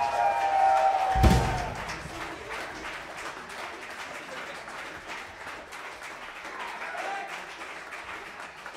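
The band's last held notes ring out and end with one final drum hit about a second in, followed by audience applause and cheering.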